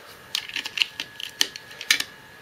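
Hard plastic toy parts clicking and knocking against each other as they are handled and fitted together: a quick series of small clicks, the sharpest two in the second half.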